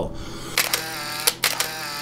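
Several sharp clicks at irregular intervals over a steady hum.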